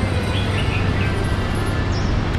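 Steady low background rumble of outdoor noise with no distinct events.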